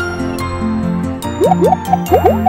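Bouncy children's cartoon music with a steady beat. In the second half, a few quick rising bloop sound effects play as toy pieces pop into place.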